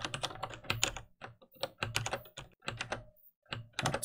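Computer keyboard typing: a run of quick, uneven keystrokes with a brief pause a little after three seconds in.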